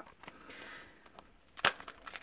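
Small cardboard blind box being handled and opened: a soft scuffing of card, then a single sharp click about one and a half seconds in.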